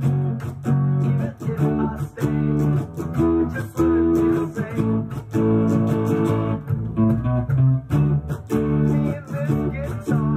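Ibanez electric guitar played through an amplifier, strumming chords in a steady rhythm with the chord changing every second or so.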